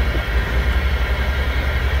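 Truck engine running, heard inside the cab as a steady low rumble with a noise haze over it.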